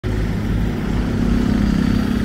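Roadside traffic: a motorcycle towing a cart approaching along the highway, its engine running steadily close by.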